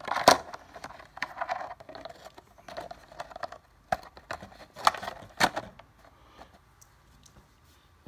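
Model helicopter canopy being fitted over the frame by hand: a series of clicks, taps and scrapes, the sharpest about a quarter second in, dying away after about six seconds.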